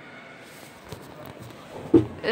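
Quiet background noise with a couple of faint clicks and one short, louder thump near the end.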